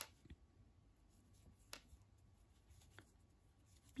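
Near silence, with a few faint clicks from hands working a crochet hook and yarn.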